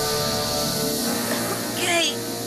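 Aerosol spray can hissing as it sprays a cloud of sleeping gas, a cartoon sound effect over background music; the hiss cuts off near the end.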